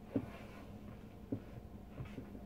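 Quiet room tone with a steady low hum, broken by two brief soft low sounds, one just after the start and one about a second later.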